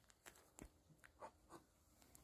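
Near silence, with a handful of faint soft clicks and rustles spread through the two seconds.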